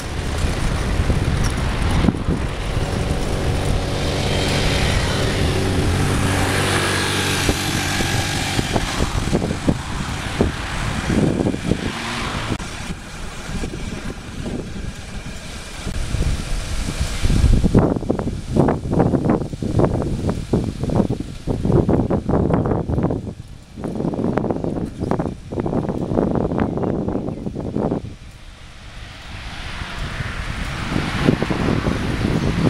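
Wind buffeting the microphone of a camera riding on a bicycle, with motor traffic passing close by. In the first part an engine hums steadily as a vehicle goes by with a whoosh; in the second half the wind noise comes in irregular gusts.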